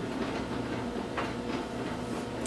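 Steady low hum and hiss of room noise, with a faint brief noise about a second in.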